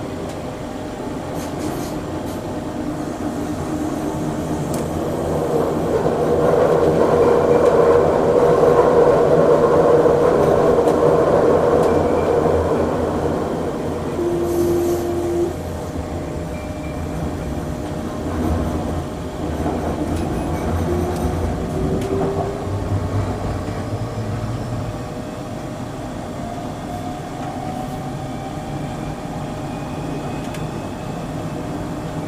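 Taoyuan Airport MRT express electric train running at speed on elevated track, heard from the driver's cab: a steady rolling rumble that grows louder for several seconds in the middle, with a whine that rises in pitch twice in the second half.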